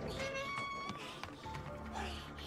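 Anime episode soundtrack playing under the reaction: music with a short, high-pitched, meow-like cry in the first second.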